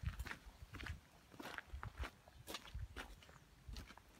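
Footsteps on gravel at a walking pace, about two steps a second.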